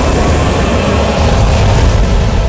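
Loud, deep rumbling sound effect with a faint rising hiss, a soundtrack transition effect leading into a title card.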